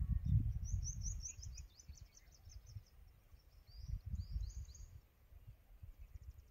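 A small bird singing two quick runs of high chirps, about half a second in and again around four seconds, over a low, gusty rumble of wind on the microphone.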